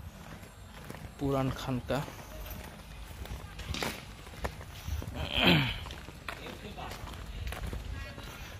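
Footsteps of people walking on a paved path, with a short, loud call falling in pitch about five seconds in.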